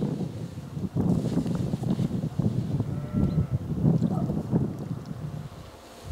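Wind buffeting the microphone: an uneven low rumble that eases off near the end.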